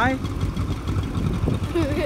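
Tractor engine running steadily, a low, even rumble.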